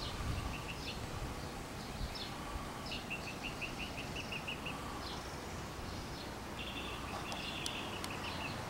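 Small birds chirping: a quick run of about eight short, evenly spaced chirps in the middle, and another burst of chirping near the end, over a low outdoor rumble.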